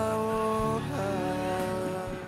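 Background music from a Portuguese-language worship song: a singer holds long sustained notes, moving to a new note a little under a second in.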